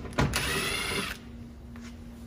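Small cordless impact driver runs in one short spin of under a second, backing out a 10 mm screw from a liftgate access panel. A click comes just before the motor starts.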